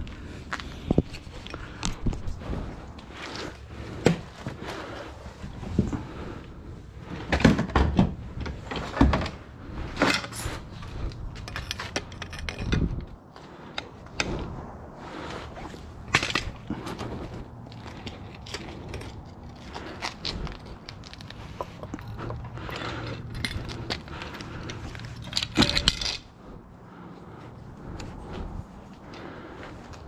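Irregular clicks, clanks and scrapes of scrap metal being handled and cut: a brass hose bib on copper pipe worked with long-handled cutters.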